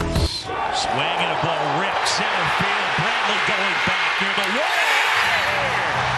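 Ballpark crowd noise swelling as a home run is hit and carries toward the left-field wall, with a TV play-by-play announcer calling it over the crowd.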